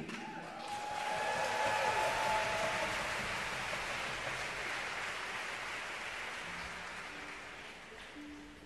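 Concert audience applauding, swelling in the first two seconds and then slowly dying away, with a few cheers at the start. A faint held low note sounds near the end as the applause fades.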